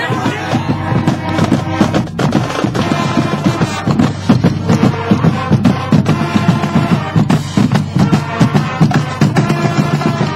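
Marching band playing a tune: trumpets, sousaphones, flutes and drums, with a steady, regular drum beat.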